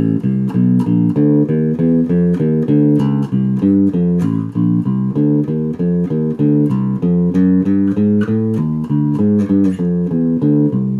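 A Warwick Streamer LX Broadneck six-string electric bass strung with very bright GHS Progressive roundwound strings, plucked with the fingers through a 12-bar blues line in a steady run of notes. It is played without thumb muting, so the tone is bright and the notes sustain.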